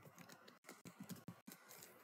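Faint computer keyboard typing: an uneven run of quick key presses.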